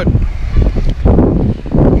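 Wind buffeting the microphone: a loud, uneven low noise with gusts.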